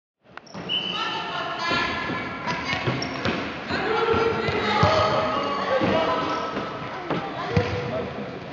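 Children's basketball game in a sports hall: many children's voices calling out over one another, with a ball bouncing on the court floor several times, all echoing in the large hall. The sound cuts in suddenly a moment in.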